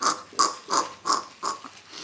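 A run of about five short, breathy voice sounds, evenly repeated about three times a second.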